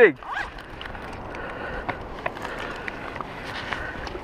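Steady outdoor rush of moving river water and wind, with scattered light clicks and scuffs of footsteps on shoreline rocks.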